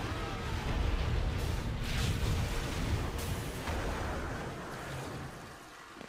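Cartoon train-wreck sound effects: a long rumbling crash with heavy impacts around two and three seconds in, dying away over the last couple of seconds as a locomotive derails.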